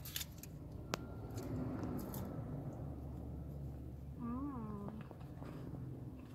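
Steady low hum of a car cabin, with one sharp click about a second in and one short, whiny call that rises and falls a little after four seconds in.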